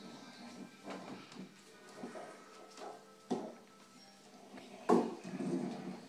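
Bare feet thumping and shuffling on a hardwood floor during taekwondo steps and kicks: scattered soft thuds, with two sharper ones about three and five seconds in.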